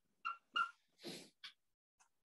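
Dry-erase marker squeaking and scratching on a whiteboard in four short strokes. The first two strokes have a thin squeak, and the third is a longer scratchy hiss.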